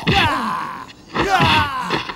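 A man's groans of pain from a fight scene: two drawn-out cries, each close to a second long and falling in pitch, the first starting with a short knock.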